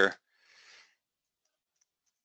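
The end of a spoken word, then a faint breath, then near silence with a few very faint computer keyboard clicks near the end.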